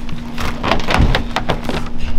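A warm sheet of peanut brittle being stretched and pried loose from a stainless steel counter by gloved hands: a run of irregular crackles, scrapes and taps, loudest about a second in.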